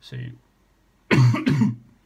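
A man coughing, two harsh hacks in quick succession about a second in. It is a chesty cough from an illness he is still getting over.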